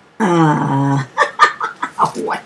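A woman's voice: one drawn-out vocal sound falling in pitch, then a run of short choppy vocal sounds, with a sharp click of plastic bags being handled about one and a half seconds in.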